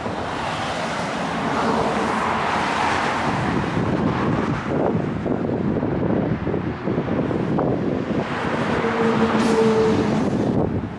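Road traffic noise, a steady rush of passing vehicles, with a vehicle's engine hum coming in near the end.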